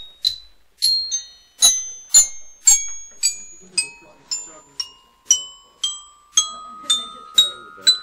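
Countdown timer's chiming soundtrack: bell-like glockenspiel notes struck about twice a second at changing pitches, each ringing briefly, with a held tone creeping upward in pitch through the second half.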